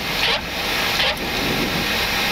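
Steady rushing noise on the flight deck of a Boeing 737-800 on short final for landing: airflow over the nose and windscreen mixed with the engines.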